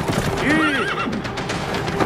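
A horse neighing once, a short wavering whinny about half a second in.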